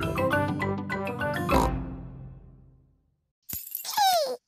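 Cartoon music cue of quick, short plinking notes that ends in a crash about one and a half seconds in, which rings away over the next second or so.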